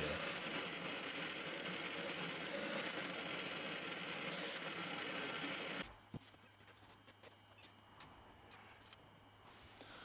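Drill press boring a 40 mm Forstner bit through a softwood board: a steady cutting noise that stops abruptly about six seconds in. A faint knock and quiet handling of wooden boards follow.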